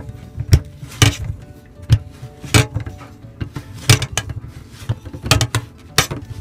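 Sharp plastic clicks and knocks at irregular intervals as a dishwasher's topmost spray arm is twisted by hand onto its mount until it locks in.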